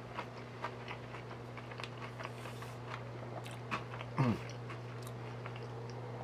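Chewing a mouthful of crispy vegetable samosa: small, irregular crunches and mouth clicks, with a short falling "mm" hum about four seconds in.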